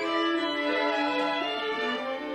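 String quartet of violins, viola and cello playing bowed, sustained chords that shift pitch a few times.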